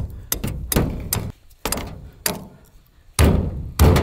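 A hammer driving a bent rebar stake into the ground: a run of about nine uneven blows, each with a short ring, the two heaviest near the end.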